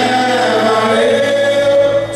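Live band playing a song with sung vocals, the voice holding long notes over the instruments.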